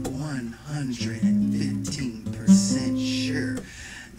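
Acoustic guitar strummed in a repeating chord pattern, with fresh strums about a second in and again midway, dropping off briefly near the end.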